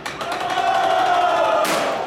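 A long, loud shout from several voices together, held for over a second in a break in the lion dance drumming. A cymbal crash comes near the end.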